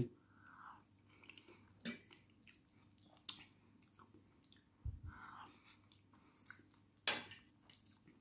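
A person chewing a mouthful of omelette close to the microphone: faint, wet mouth sounds with scattered sharp lip and tongue clicks. There is a dull thump about five seconds in and a sharper smack near the end.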